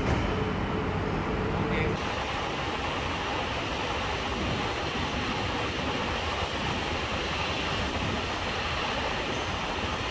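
A light-rail train at a station platform: a steady electric hum for about two seconds, then an even rushing noise.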